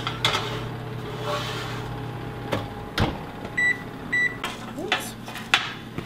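An oven's steady hum, a door thud about three seconds in, then two short electronic beeps about half a second apart from its control panel as it is set, followed by a few light clicks.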